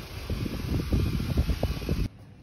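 Wind buffeting a phone's microphone, a steady rush with low rumble, with irregular bumps of handling noise as the phone is carried and swung around.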